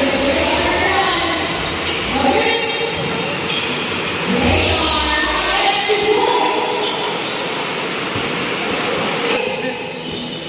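Indistinct voices of several people talking and calling out at once in a large indoor basketball gym, with no clear words, over a steady low din of the hall.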